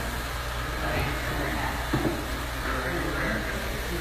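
Busy room ambience: a steady low hum under faint distant voices.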